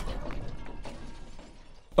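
Glass shattering as a television is smashed, dying away: the tail of the crash with a few scattered clinks of falling glass, fading almost to nothing.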